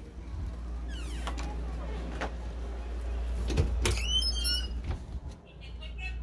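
Phone handling noise as the phone is carried: a steady low rumble on the microphone, a few sharp knocks or clicks near the middle, and a brief wavering squeak a little past the middle.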